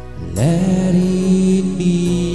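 A man singing into a microphone over recorded backing music, sliding up into a long held note about half a second in.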